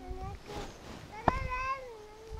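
Faint animal calls: a few short ones at the start, then a longer drawn-out call of about a second in the second half that sinks slightly in pitch, opening with a sharp click.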